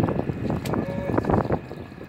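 Wind buffeting the microphone: a rough, uneven low rumble, with a few short knocks mixed in.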